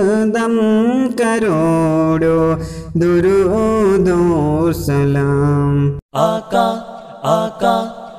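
A man singing an Urdu Salat-o-Salam in long, gliding, melismatic lines, over a low steady drone. The singing cuts off abruptly about six seconds in, and short separate musical notes of an outro follow.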